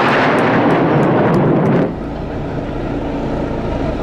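Four military jets flying over in formation: a loud, steady jet roar that cuts off suddenly about two seconds in, leaving a quieter low rumble.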